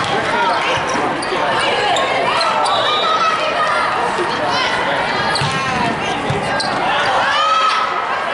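Volleyball rally in a large echoing hall: the ball struck several times and athletic shoes squeaking in short bursts on the court, over players' calls and crowd voices.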